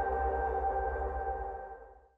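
Sustained electronic chord of a TV station ident jingle ringing out, with a low rumble beneath, fading away to silence near the end.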